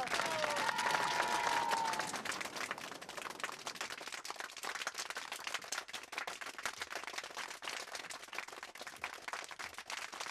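A group of people clapping, a dense patter of hand claps that grows gradually quieter.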